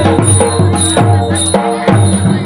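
Odia folk dance music: a dhol drum beaten in a quick, steady rhythm under a sustained melody, the low drum sound dropping out briefly about one and a half seconds in.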